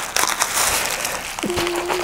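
Plastic packaging wrap being pulled and handled around a flat parcel, a continuous crinkling and crackling.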